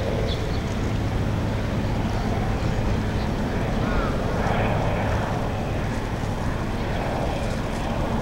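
Steady city background noise with a constant low hum and faint voices of passers-by.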